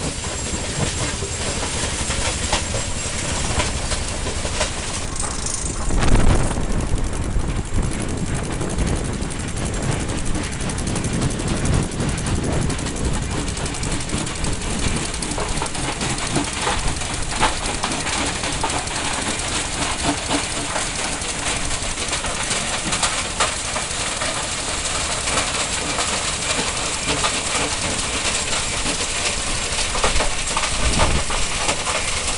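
Rock-crushing plant running: crusher and conveyors grinding stone, a continuous loud rattling and clattering din. It surges louder for a moment about six seconds in.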